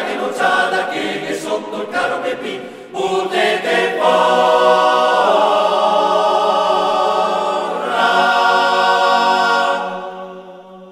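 Male a cappella choir singing a Trentino folk song in dialect: a few short sung phrases, then a long held chord from about four seconds in that swells again near eight seconds and is released at the end.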